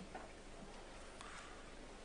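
Quiet room tone in a hall during a pause in a speech: a faint steady low hum and a few faint ticks.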